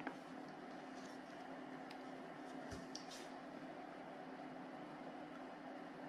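Faint steady low hum, with a few light clicks and taps as a bulb on clip leads is handled and connected.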